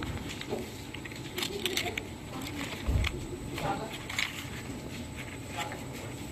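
Crackling and rustling of thin dental casting wax sheets and their paper interleaves as they are handled and pulled from a cardboard box, with a dull thump about three seconds in.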